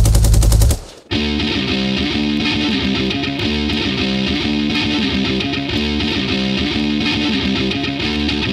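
Oi! punk rock band recording: one song ends abruptly just under a second in, and after a brief gap the next song starts with a repeating electric guitar riff.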